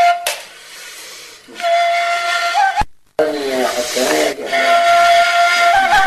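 Gasba, the Tunisian reed flute, playing long breathy held notes with small ornaments, in a low-quality amateur recording. About three seconds in the sound cuts out with a click, and a short stretch of wavering, lower singing-like tones follows before the flute's held notes resume.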